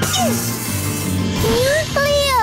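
Cartoon background music with a character's wordless vocal sounds: a short falling cry just after the start and a rising one near the end.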